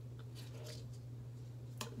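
Faint clicks and soft squishy sounds of a clear plastic dental aligner being pushed onto the teeth with the fingers, with one sharper click near the end.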